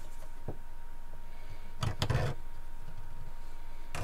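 Wooden go-bar rods knocking against the bench setup as they are wedged between a flexible shelf and a guitar back's reinforcement strip. There is a light knock about half a second in, a louder cluster of knocks around two seconds in, and a click near the end.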